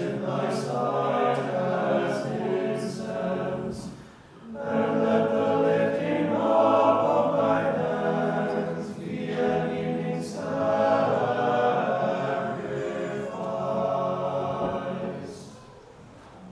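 A small group of chanters singing Orthodox liturgical chant a cappella, in long sustained phrases. There is a brief break about four seconds in, and the phrase ends near the end.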